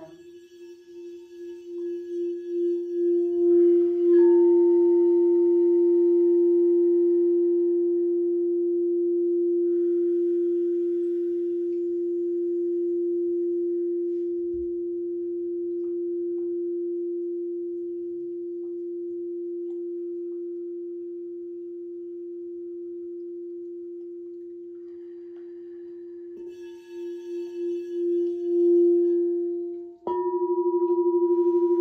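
Crystal singing bowl rubbed around its rim with a wand. A single low steady tone swells with a pulsing wobble over the first few seconds, then rings on and slowly fades. Near the end the rim is rubbed again, the tone swells back up with the same wobble, and then it stops suddenly.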